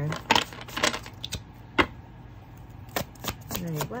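A tarot deck being shuffled by hand: irregular clicks and slaps of cards dropping onto the pack, with two louder snaps, one just after the start and one a little before the halfway point, and a quicker run of clicks near the end.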